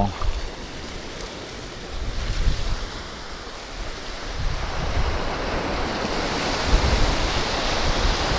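Small waves washing up on a sandy beach, the surf growing louder about halfway through, with wind rumbling on the microphone.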